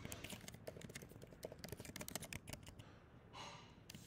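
Faint computer keyboard typing: irregular, quick keystrokes, with a brief soft swish near the end.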